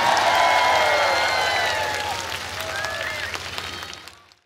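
Concert crowd cheering and clapping as the song ends, with many shouting voices over the applause. The sound fades out near the end.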